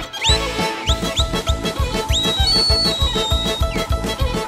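Live folk band playing an up-tempo instrumental with accordion, violin, bass guitar and drums, the drums keeping a steady beat of about four a second. Several quick upward-sliding high notes ring out over it, and one long held high note sits near the middle.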